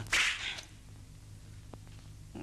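A single short swish of a dagger swung through the air, a dubbed fight sound effect lasting about half a second at the start. A faint, steady low hum of the old soundtrack follows.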